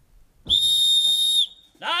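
A whistle blown once, a steady high note about a second long, the signal calling campers to line up for lunch. Near the end a man starts shouting the call.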